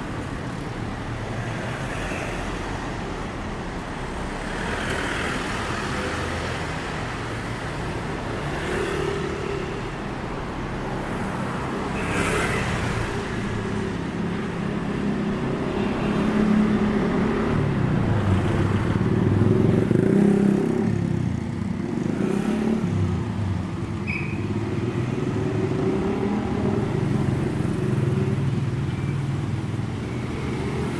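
Street traffic: cars and motorcycles passing on a city street, engine and tyre noise throughout. It swells as vehicles go by about two-thirds of the way through, then eases.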